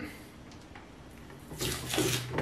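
Dried masking fluid being picked and peeled off a painted plastic helmet: faint at first, then a short rustling, scratchy noise in the last half second.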